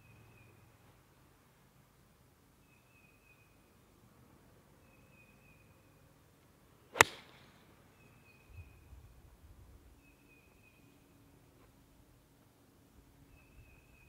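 A golf club striking the ball on a tee shot: one sharp crack about halfway through, by far the loudest thing, with a brief ring-off. Faint short high calls repeat every second or two in the background.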